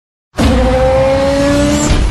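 Race-car sound effect: an engine revving with tyre squeal, starting suddenly about a third of a second in, its pitch rising slowly.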